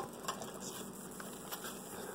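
Faint handling noise as a clear plastic clamshell pack of wax melts is picked up: a few light clicks over a low hiss.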